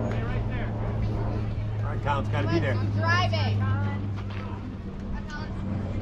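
Indistinct voices of spectators and players calling out across a ballfield, loudest a couple of seconds in, over a steady low hum.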